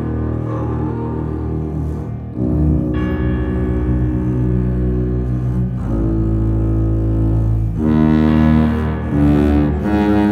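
Contemporary chamber ensemble music: low sustained notes from tuba, cello and double bass, the chord shifting every couple of seconds.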